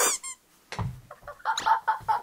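A woman's voice: a brief high squeal at the start, a low thump just under a second in, then short rapid vocal bursts, about four a second.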